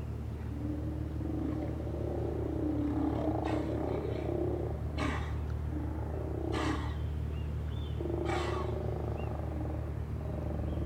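Sea lions hauled out on rocks growling, with low grumbles building into four loud rough roars spaced a second or two apart, over a steady low hum.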